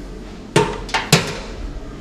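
Three sharp metallic clanks with a brief ring: a candy thermometer being set down against a stainless steel sink.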